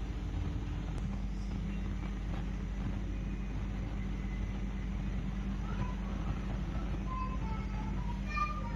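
A steady low rumbling hum, with faint short high chirps coming in near the end.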